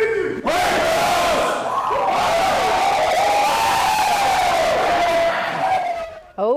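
A high school football team yelling together in a huddle, a loud group shout that lasts about five seconds and dies away at the end.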